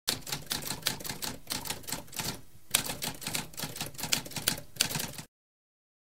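Typewriter keys typing in quick, uneven runs of clacking keystrokes, with a short pause about halfway through. The typing stops a little past five seconds in.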